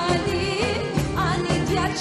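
An Albanian song: a singer's ornamented, wavering melody over a steady instrumental backing.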